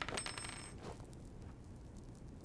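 Small metal objects clinking together a few times in quick succession, with a bright, high ringing that dies away within the first second, then one softer clink.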